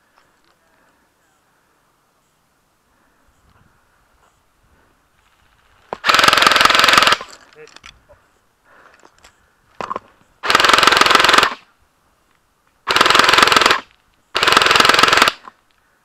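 Airsoft electric light machine gun fired on full auto in four bursts of about a second each, the first about six seconds in and the other three close together in the second half.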